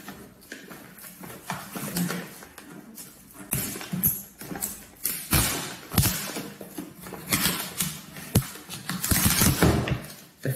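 Cardboard packaging and plastic film wrap being pulled apart and handled: irregular crinkling, rustling and scraping with several sharp knocks, busiest and loudest near the end.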